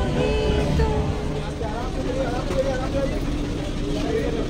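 Wind buffeting the microphone on a boat's open deck, a steady low rumble under people talking; live band music ends about a second in.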